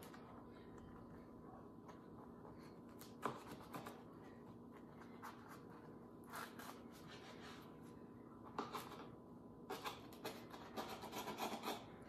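Kitchen knife sawing through a tray of baked slider rolls on a plastic cutting board: faint scraping, crunching strokes, a few scattered at first and coming faster in the last couple of seconds, over a steady low hum.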